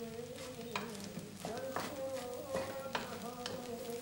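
A spoon stirring food in a pot on a gas stove, knocking against the pot about half a dozen times, while the food sizzles faintly. A steady low tone runs underneath.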